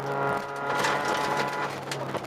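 Interior of a Mk II VW Jetta rally car at speed: the engine runs at a steady pitch, then its note eases off about a third of a second in. The rest is a clatter of cabin rattles, clicks and tyre noise.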